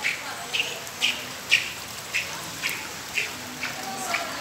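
Footsteps on wet, flooded ground at a steady walking pace, about two steps a second, each a short splash, with faint voices in the background.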